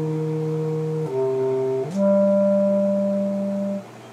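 Solo brass instrument playing a slow melody in the low-middle register. It holds a long note, steps down to a lower one about a second in, then rises to a higher note held for nearly two seconds, which stops shortly before the end for a breath.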